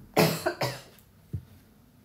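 A person coughing twice in quick succession, a voice that is giving out, followed by a smaller cough-like catch.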